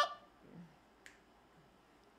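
Pause in a man's a cappella singing: his held note cuts off right at the start, leaving a quiet stretch with a single short click about a second in.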